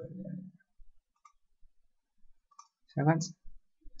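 A few faint, scattered computer mouse clicks.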